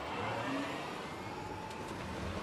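A golf cart drives up and passes close by, its motor running with a whine that rises in pitch and then holds steady over the rumble of its tyres.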